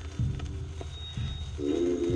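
Contemporary chamber ensemble music. Soft low pulses come about once a second with a few faint clicks, and a held pitched note with several overtones comes in near the end.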